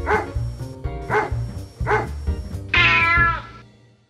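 A cat meows three times, about a second apart, over background music with a steady bass beat. Near the end comes a longer, louder meow, then the music fades out.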